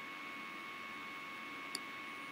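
Low, steady electrical hum and hiss with two faint high steady tones, and a single faint click about three-quarters of the way through.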